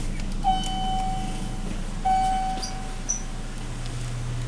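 Elevator car's electronic signal sounding twice: two identical tones of the same pitch, each starting sharply and fading over about a second and a half. A steady low hum from the hydraulic elevator runs underneath.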